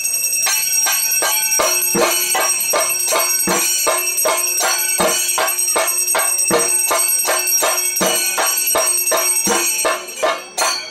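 Bells ringing continuously in fast, even metallic strokes, with a heavier stroke about every second and a half, during a temple ritual.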